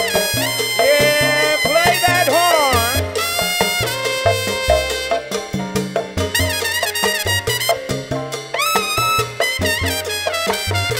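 Live salsa band with a trumpet solo: the trumpet plays bending, sliding phrases over bass and percussion.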